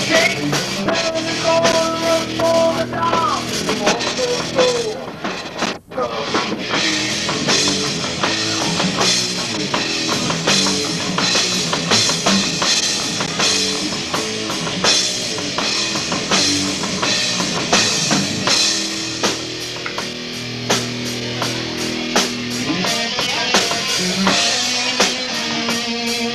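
Rock band playing live: a drum kit with busy kick and snare hits under electric guitar and bass, with a guitar line bending in pitch in the first few seconds. The whole band stops for a split second about six seconds in, then comes back in.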